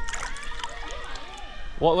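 Light sloshing and splashing of shallow spring water as someone wades in it, with short sharp ticks, over faint distant voices; a voice starts speaking near the end.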